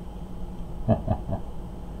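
A man's short chuckle, three or four quick breathy pulses about a second in, over a faint steady room hum.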